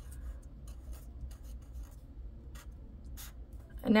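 Sharpie felt-tip marker writing on paper: a few short scratchy pen strokes, with a faint steady low hum underneath.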